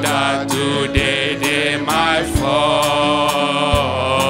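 A man leading a slow worship song with long held notes, over sustained instrumental chords and a steady beat about twice a second.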